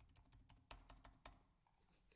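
Faint, irregular clicking of a computer keyboard, a quick run of keystrokes in the first second or so, then a few scattered clicks.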